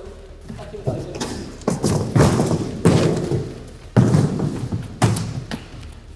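Empty cardboard boxes being shoved and knocked aside: a run of about seven dull thuds, irregularly spaced, each trailing off in the large hall.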